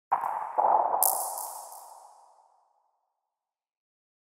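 Short intro sound effect: a noisy swell just after the start, a second swell about half a second in, then a few bright, high hits around a second in, all dying away by about two and a half seconds.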